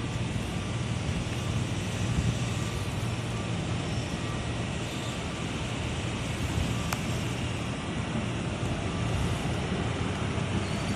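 Hi-rail truck's engine running as it approaches on the rails, a steady low drone, with a single sharp click about seven seconds in.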